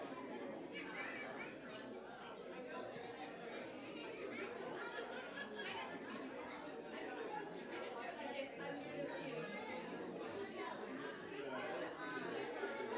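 Indistinct chatter of a congregation, many people talking at once in a large room, with no single voice standing out.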